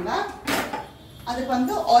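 A woman talking, with one brief clatter of kitchenware about half a second in.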